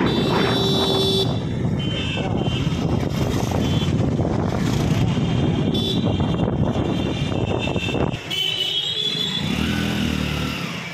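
Motorcycle riding along a busy town street: steady engine and wind noise, with several short horn toots from the surrounding traffic. About eight seconds in the engine noise drops away, leaving quieter street sound.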